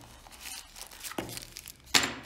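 Cardboard box insert and a plastic-wrapped accessory pack being handled and pulled out, giving irregular crinkling and rustling, with a sharp click just before the end.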